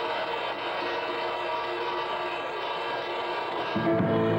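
A live band's cymbal rolled into a steady shimmering swell, with no bass under it. Near the end the band comes in with bass and drums.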